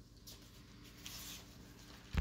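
Near silence: faint room hiss, with a soft scratchy rustle around the middle.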